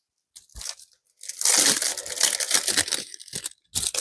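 Rustling and crinkling of plastic and paper as planner supplies and a sticker book are rummaged through and handled. The sound starts about half a second in, is loudest through the middle, and ends with a short crinkle.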